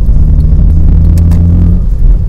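Car engine drone and heavy road rumble heard from inside the cabin while the car accelerates, a steady low hum that drops away near the end.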